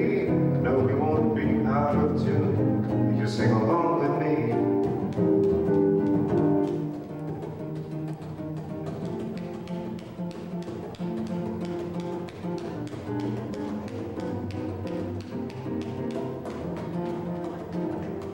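Live jazz played on acoustic guitar, fuller and louder for about the first six seconds, then softer with a steady strummed rhythm.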